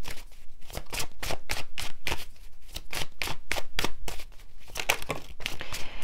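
A tarot deck being shuffled overhand by hand: a quick, irregular run of crisp card clicks and slaps, several a second.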